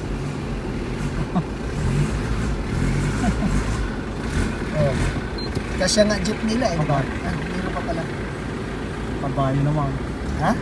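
Low engine rumble of a passing passenger jeepney, fading after about four seconds, under people talking.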